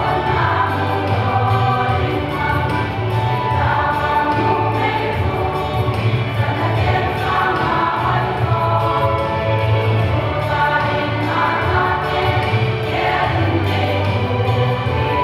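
Women's choir singing a gospel hymn together, over a steady deep bass accompaniment.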